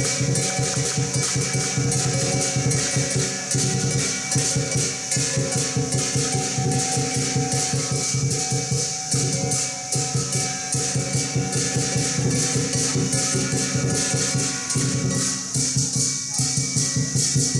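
Live Chinese lion-dance percussion: a large drum and cymbals playing a fast, steady beat, with held ringing tones over it.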